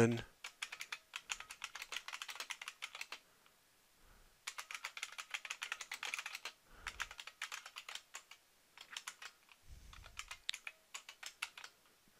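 Typing on a computer keyboard: quick runs of keystrokes with a pause of about a second a few seconds in.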